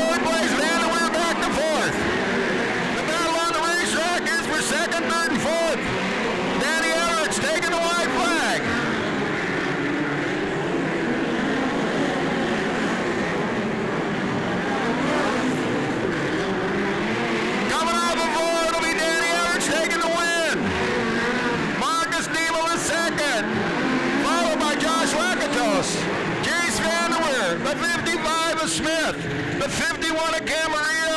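Several midget race cars running on a dirt oval, with the engines repeatedly rising and falling in pitch as they rev through the turns and pass by.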